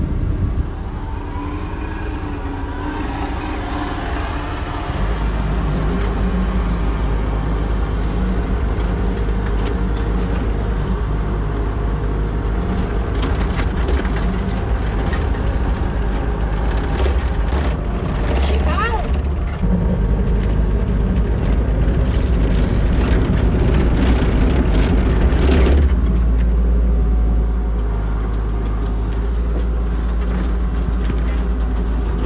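Compact excavator's diesel engine running loud and steady, heard from inside the cab as the machine digs; the engine comes up louder about five seconds in. A brief high squeal with a sliding pitch sounds a little past halfway.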